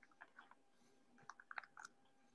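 Near silence with a few faint, short clicks, most of them bunched together in the second half.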